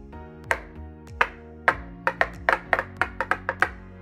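Metal enamel pins tapped, sharp clicks with a short ring: three spaced taps, then a quicker run of about ten in the second half. Background music plays underneath.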